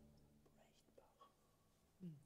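Near silence: the last ring of a grand piano's final chord fading away, with a few faint small noises.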